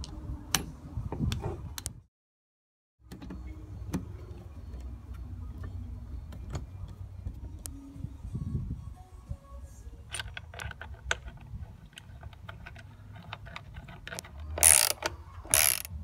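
Small mechanical clicks and taps of a screwdriver and mirror-mount hardware as the screws of a cargo mirror bracket are driven home. A cluster of clicks comes about ten seconds in and two loud knocks shortly before the end. About two seconds in there is a second of dead silence.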